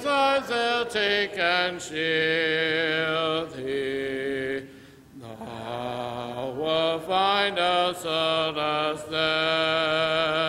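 A congregation singing a hymn a cappella in parts, with long held notes and a brief breath pause about five seconds in.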